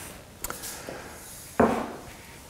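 A heavy stainless steel gouge auger is laid down on a table: a light click about half a second in, then a loud thud near the end that dies away quickly.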